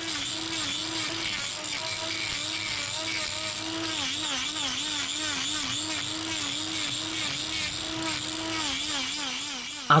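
Angle grinder with a hoof-trimming disc grinding a cow's claw, its motor note wavering up and down as the disc bites. It makes a different sound from usual, which tells the trimmer that the hoof is hollow on the inside.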